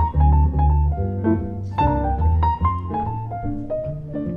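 Jazz piano playing a single-note melodic line over a walking upright double bass in a small swing combo.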